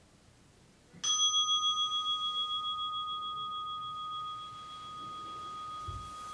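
A meditation bell struck once about a second in, ringing with a clear tone and slow wavering decay that carries on to the end. It marks the close of a 30-minute sitting.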